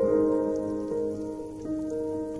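Butter sizzling and crackling as it is rubbed with a fork across the hot plates of an electric waffle maker, under background piano music.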